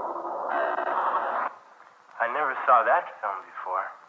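Tinny, radio-filtered sound: a burst of static-like noise for about a second and a half, then a voice speaking through the same narrow, telephone-like filter.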